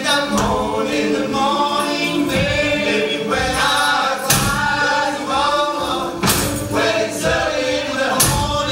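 Mixed male and female voices singing a Caribbean spiritual together in chorus, largely unaccompanied, with a few sharp percussion hits.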